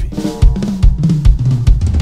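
Pearl Decade Maple drum kit with six-ply maple shells and Zildjian cymbals being played: a quick run of drum and cymbal hits, with the drums left ringing between strokes.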